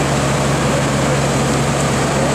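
Fire engine idling with a steady low hum, over the continuous rushing of the flooded Big Thompson River.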